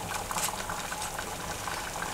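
Pan of food simmering on an open wood fire, with small irregular crackles and pops.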